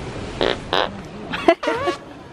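A person's voice: two short breathy puffs, then a brief voiced sound with a wavering pitch near the end, with no words.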